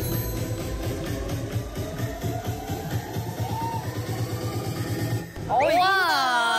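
Electronic dance music with a steady beat and a slowly rising synth tone, which cuts off about five seconds in. Women's voices then exclaim in admiration.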